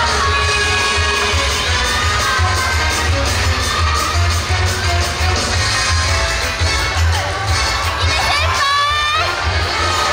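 Audience cheering and shouting over loud dance music with a steady, pulsing bass beat. Near the end a rising pitched sweep cuts through.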